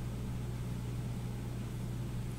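Steady low hum with a faint even hiss: room tone with no distinct sound events.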